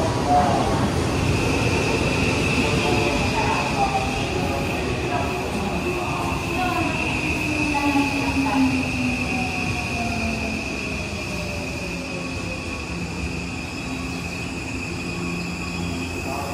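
Odakyu Romancecar EXEα (30000 series) electric train moving slowly along the platform, its motor whine falling in pitch as it slows to a stop. A steady high-pitched squeal sets in about a second in and holds over the rumble of the cars.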